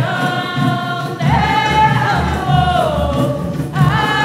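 Voices singing a Candomblé religious song as a group, led by a woman's voice that holds long notes sliding downward, over a steady low drum pulse.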